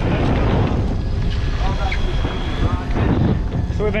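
Wind buffeting the microphone on an open boat at sea, a loud, rough rushing noise, with faint voices in the background.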